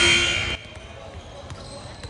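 A loud steady tone cuts off suddenly about half a second in. It gives way to gym court sounds: scattered short squeaks and knocks of sneakers and a bouncing basketball.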